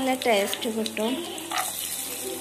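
Cashew pieces frying in fat in a nonstick pan, giving a steady sizzle. A voice talks over the first second or so.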